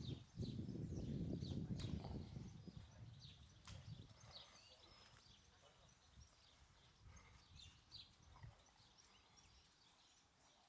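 Small birds chirping faintly, many short high notes scattered throughout, over a low rumble that is loudest in the first two seconds and then dies away.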